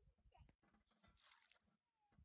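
Near silence, with faint low bumps and a brief soft hiss about a second in.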